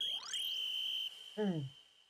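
A title-card sound effect from the anime: a quick rising swoosh into a single high, ringing tone that holds for about a second and then fades. A short vocal sound falling in pitch comes near the end.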